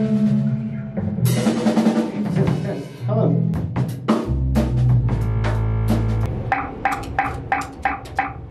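A band playing in a rehearsal room: a drum kit over held bass notes and keyboard chords, with the drum hits getting busier and more regular in the second half.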